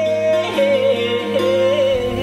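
Live acoustic trio music: a man singing a long, wavering melody line over held accordion chords, with violin and a long-necked lute in the ensemble.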